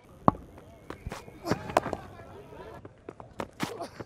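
Field sound at a cricket match: a sharp knock a moment in, lighter knocks and clicks around the middle and near the end, and faint distant voices.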